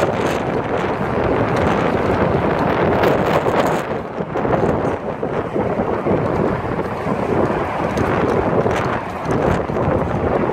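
Wind buffeting the microphone: a loud, rough rushing noise that swells and dips briefly a few times.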